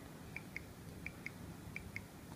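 Piezo speaker on an Arduino breadboard ticking out the audible feedback for a bicycle turn signal, like a car's indicator. It gives faint, short, high beeps in pairs, about one pair every 0.7 seconds, in step with the blinking signal lights.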